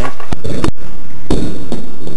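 About four loud, sharp thumps close to the microphone, spread over two seconds, with a brief near-silent gap after the second.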